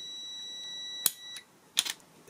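Multimeter continuity beeper sounding a steady high-pitched beep through the closed contacts of a tankless water heater's over-pressure cut-out switch. About a second in, a sharp click as the pushed switch trips open, and the beep cuts off shortly after, showing the circuit is now broken.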